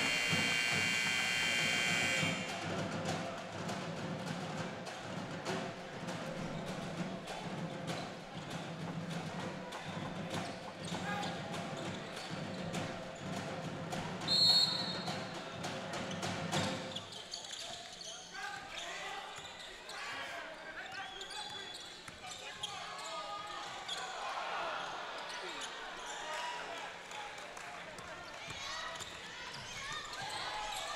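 Gym sound of a basketball game resuming: a short, loud horn-like tone at the start, crowd chatter through the first half, a brief referee's whistle about 14 seconds in, then a basketball bouncing with sneaker squeaks on the hardwood as play restarts.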